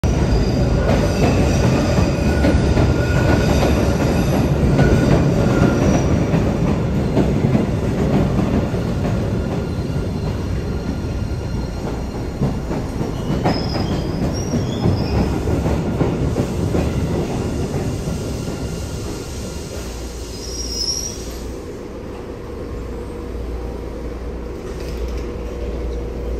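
MBTA Blue Line subway train pulling into an underground station: a loud rumble of steel wheels on rail with steady high squealing tones. It grows quieter as the train slows to a stop.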